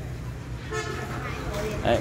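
A vehicle horn toots briefly about three-quarters of a second in, over a low steady rumble.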